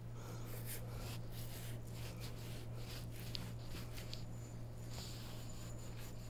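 Large kitchen knife sawing through a whole watermelon's rind and flesh: faint, irregular cutting strokes over a steady low hum.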